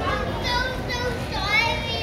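High-pitched voices of young children calling out twice, the second louder, near the end, over steady background noise.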